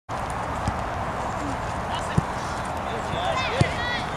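Soccer ball struck three times, dull thuds a little over a second apart with the last the loudest, over a steady outdoor hiss. High-pitched shouts from players rise near the end.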